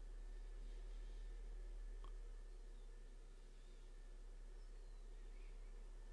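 Faint room tone with a steady low hum, and one small click about two seconds in.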